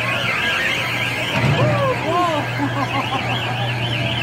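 High electronic siren tone warbling rapidly up and down several times a second, breaking off briefly about a second in and then starting again. Children's voices and a low steady hum run underneath.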